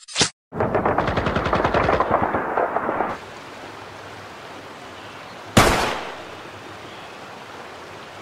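Gunfire sound effects: a short sharp shot, then a rapid automatic burst lasting about two and a half seconds. About five and a half seconds in comes a single loud shot that rings out over a faint steady hiss.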